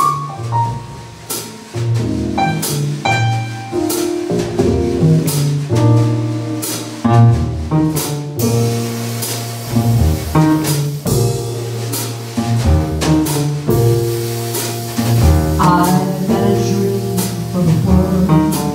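Live jazz trio of piano, upright double bass and drum kit playing instrumentally, with walking bass notes and regular cymbal strokes; the cymbals grow denser about eight seconds in.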